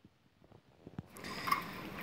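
Bicycle setting off: a few faint clicks, then about a second in a rising rush of tyre and wind noise as it gets rolling.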